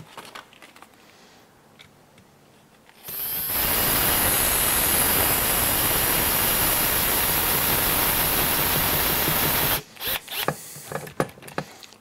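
Power drill-driver running steadily for about seven seconds as it drives a long screw down through the skid plate of an RC car chassis. It starts about three seconds in and stops abruptly near ten seconds, with a few light clicks before and after.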